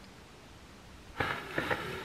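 Near silence for about a second, then a soft rush of breath as a woman blows out through pursed lips.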